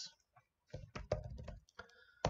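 Hard plastic trading-card holders clicking and clacking against each other as they are handled: a quick run of clicks about a second in and another near the end.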